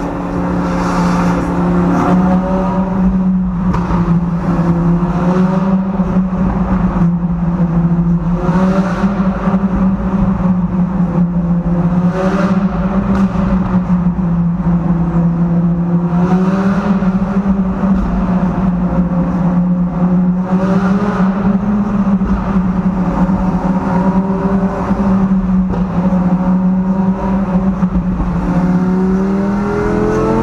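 Lamborghini Gallardo's V10 engine and exhaust heard from inside the cabin, running at a steady cruising note with small rises and dips in pitch, then revving up near the end.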